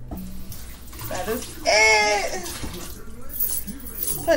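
A woman's voice giving one drawn-out, high-pitched vocal note about two seconds in, with a few shorter vocal sounds around it.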